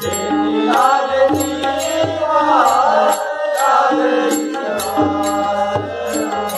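Warkari devotional bhajan: voices chanting to the steady beat of small hand cymbals (taal), with a drum, about two to three cymbal strikes a second.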